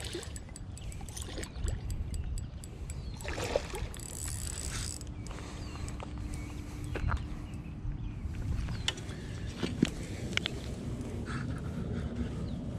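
A hooked largemouth bass splashing and thrashing at the water's surface as it is played toward the bank, over rustling and handling noise, with louder bursts of splashing noise about three and a half and four and a half seconds in.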